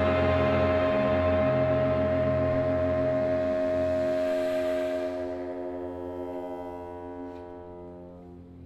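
A concert orchestra with a solo baritone saxophone holds a sustained chord of many steady, ringing tones in a contemporary concerto. The chord thins and fades away over the last few seconds.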